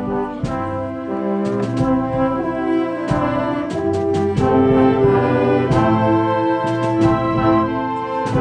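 A concert wind band playing, brass to the fore, with held chords that shift every second or so and sharp percussion strokes accenting the music at irregular moments.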